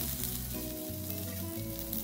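Freshly added chopped onion and garlic sizzling steadily in hot oil with fried chana dal, urad dal and dried red chillies in a pan.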